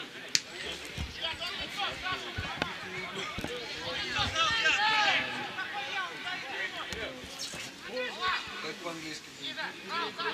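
Footballers' shouts and calls across an outdoor pitch, several voices overlapping, loudest about four to five seconds in. A single sharp thud of a football being kicked comes just after the start.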